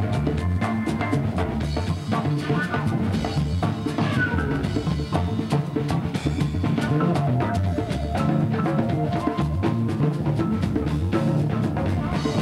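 Live band playing with electric bass guitar and drum kit, a steady beat of drum strokes over a heavy bass line.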